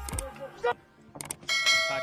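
Boxing ring bell struck once about one and a half seconds in, its ringing tone hanging on, with a couple of short knocks just before it.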